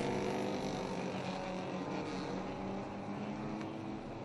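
A field of four-cylinder mini stock race cars running together at a steady pace before the start, a blended drone of engines.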